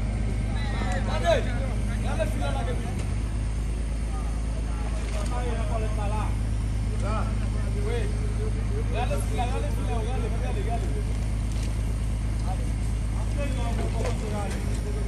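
Engine of a motor-driven water pump running steadily with a low, even drone, voices calling faintly in the background.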